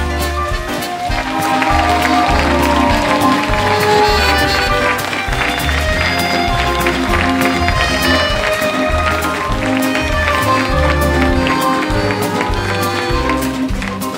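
Live ensemble of strings, woodwinds, double bass, guitar and drum kit playing the instrumental introduction to a song, with a steady beat.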